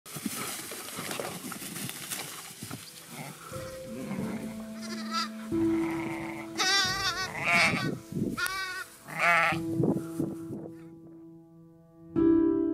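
Sheep bleating: about five quavering bleats in a cluster through the middle. Soft music with long held notes plays underneath.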